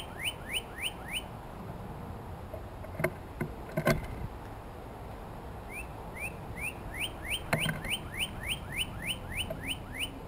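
Northern cardinal singing a run of clear rising whistles, about three a second, which stops a little past a second in and starts again about six seconds in. Around three to four seconds in come a few sharp knocks and a wing flutter as a blue jay takes off from the wooden platform feeder, the loudest one near four seconds.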